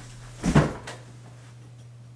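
A person dropping into an office chair: a short thump and rustle about half a second in, over a steady low hum.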